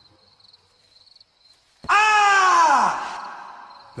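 Grasshopper mouse howl, a ghostly cry: one loud call about two seconds in that slides down in pitch over about a second, then trails off with an echo.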